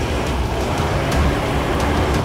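A car engine running with a steady low rumble and tyre noise as an SUV rolls slowly in.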